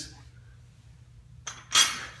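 A 45-pound Olympic barbell set down on the floor: a light knock about a second and a half in, then a loud, sharp metallic clank with a short ring.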